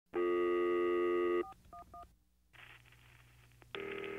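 Telephone line sounds: a steady tone for just over a second, then three short touch-tone beeps as digits are dialed. A faint line hiss follows, and a second loud steady tone starts near the end.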